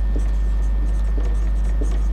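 Whiteboard marker writing a word, a run of faint short scratchy strokes, over a steady low hum.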